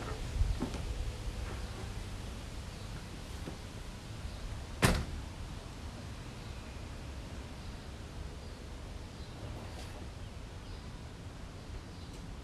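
A single sharp knock about five seconds in, with a softer knock near the start and a faint one near the end, over a steady low background hum.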